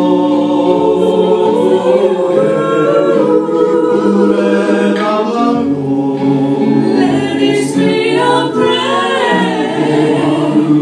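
A group of women singing a slow song together into microphones, several voices in harmony on long held notes.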